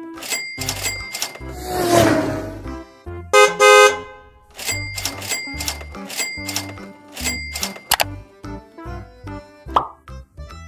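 Upbeat children's background music with a steady beat, overlaid with cartoon sound effects: a whoosh about two seconds in and a loud, bright pitched tone about three and a half seconds in.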